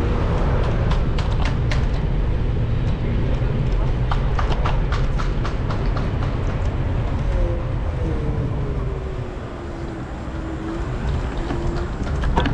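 Wind and road rumble on a camera riding along a city street, broken by runs of rapid clicking and rattling. Near the end a whine falls, then rises again in pitch.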